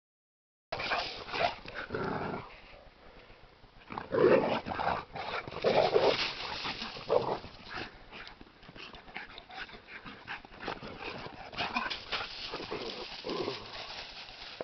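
Dogs play-fighting: growls in short bursts, loudest between about four and seven seconds in, over the scuffle of paws on dry grass and leaves.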